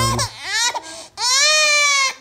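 Infant crying: a short cry at the start, then one long, high wail from about a second in that slides slightly down in pitch.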